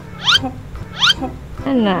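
Two short, high squeaks, each rising quickly in pitch, about three-quarters of a second apart, followed by a man's brief words.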